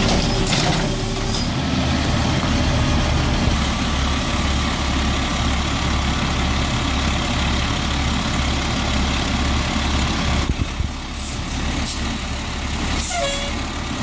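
Diesel Peterbilt 320 garbage truck's engine idling steadily. Near the end come several short bursts of hissing air, like air brakes.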